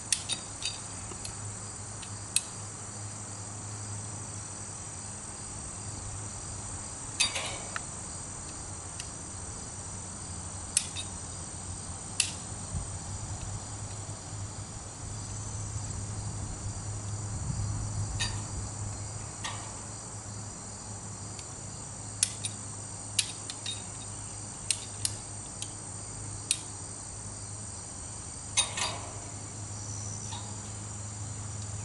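Scattered sharp metallic clicks, about fifteen at irregular intervals, from a hand-cranked winch being worked to haul up a tower on a rope. Steady high-pitched insect chirring runs underneath.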